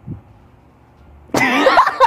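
A young man bursting into loud, coughing laughter about a second and a half in, after a near-silent pause.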